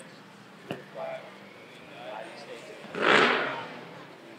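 Faint murmur of voices from a gathering, with a short, loud rush of noise about three seconds in.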